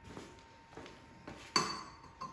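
Hand deburring tool's steel cutter head clinking against steel tubing about one and a half seconds in, the metal ringing briefly, after a little quiet handling noise.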